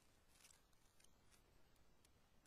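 Near silence: faint hiss with a few faint, brief clicks.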